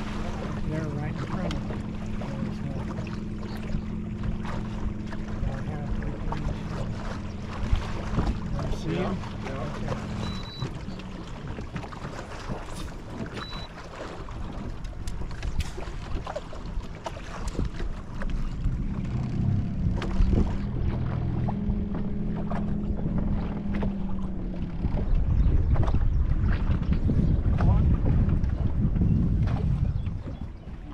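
Wind buffeting the microphone and water lapping against a fishing boat's hull, with a steady low motor hum for the first ten seconds and again from about 19 to 24 seconds. The wind grows louder near the end.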